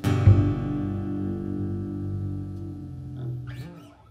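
Final chord of a song: acoustic guitar strummed and upright bass plucked together, then left ringing and fading away over about four seconds.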